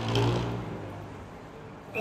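A motor vehicle's engine with a low, steady hum, loudest at the start and fading away within the first second, leaving faint street noise.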